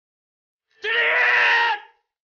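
A man's loud, drawn-out shouted command, "敬礼!" ("Salute!"), about a second long, starting a little under a second in.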